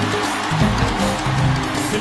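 A live mbalax band playing: a stepping bass line and busy percussion fill the sound, with no vocal line.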